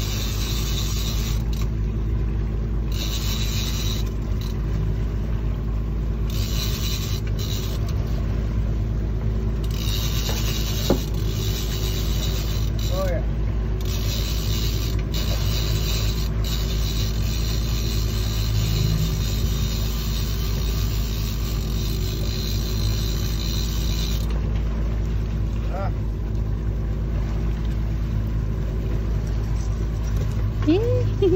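A 250 hp outboard motor running steadily with a constant low rumble, along with wind and water noise on the boat.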